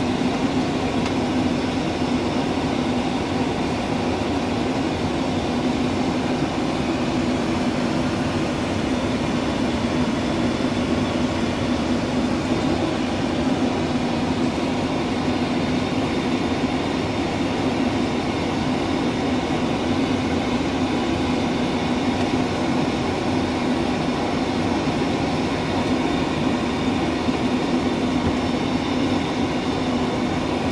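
Steady flight-deck noise of a Boeing 737 on approach: a constant rushing hum of airflow and engines with a steady low tone.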